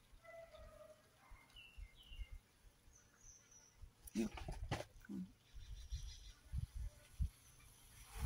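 Faint, scattered short bird chirps, some gliding in pitch, over a quiet outdoor background. A few knocks and rustles from handling come about halfway through.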